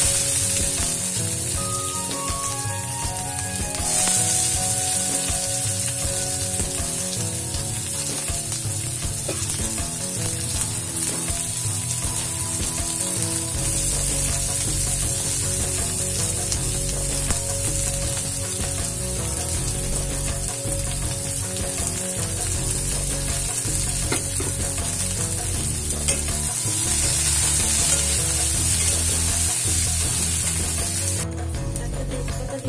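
Chopped onions frying in hot oil in an aluminium kadai: a steady high sizzle that grows louder about four seconds in and again near the end.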